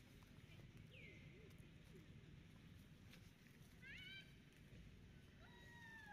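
Faint high-pitched calls from long-tailed macaques over a low background rumble: a short falling squeak about a second in, a quick rising squeal at about four seconds, and a longer, level call starting near the end.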